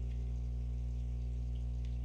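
Steady low electrical hum with a stack of even overtones, unchanging throughout; no other sound.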